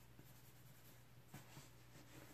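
Near silence with a steady low hum, broken about a second and a half in by two faint soft rubs of a hand brushing over the leather and lambskin panels of a tote bag.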